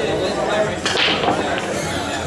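Eight-ball pool break shot: one sharp crack about a second in as the cue ball smashes into the racked balls and they scatter.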